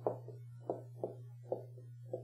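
Dry-erase marker writing on a whiteboard: a string of short strokes, about two or three a second, over a steady low hum.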